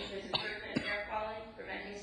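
A person coughing twice in quick succession in the first second, amid ongoing speech.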